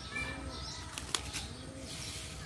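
Birds calling: a dove gives short, low, arching coos about once a second, with smaller birds chirping higher up. A single sharp click comes just over a second in.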